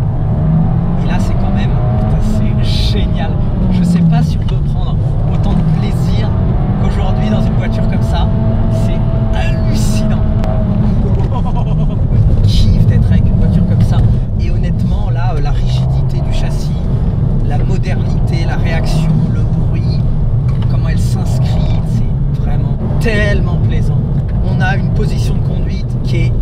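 Abarth 124 GT's turbocharged 1.4-litre four-cylinder engine and exhaust under hard driving, revs rising and falling through the bends and gear changes, loudest about twelve to fourteen seconds in.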